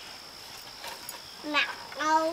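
A toddler's short vocal sound, one brief falling note about one and a half seconds in, over otherwise quiet background with a faint steady high whine.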